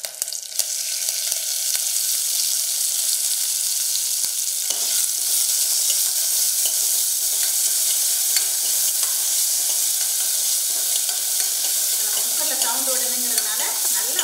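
Chopped shallots, tomato, curry leaves and coriander hitting hot oil in an aluminium pressure-cooker pan and sizzling as they fry. The sizzle swells over the first second or two and then holds steady, while a steel ladle stirring them makes small clicks and scrapes against the pan.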